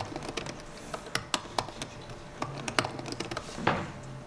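Typing on a computer keyboard: irregular key clicks, several a second, as code is entered.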